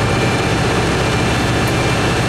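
Screen Machine 516T screening plant's engine and hydraulic system working under load as the valve lifts the fines stacker conveyor up to its next pin hole. It makes a steady, loud rush of hydraulic noise over a deep engine hum.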